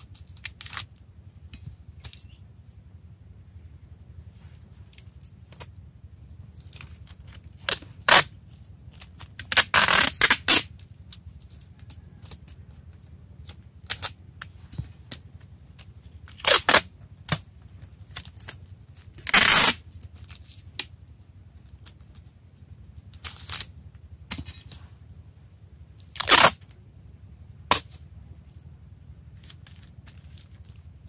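Plastic tape being pulled off a roll and wound around a tree's root ball, in about eight short tearing pulls; the longest and loudest come about ten and twenty seconds in.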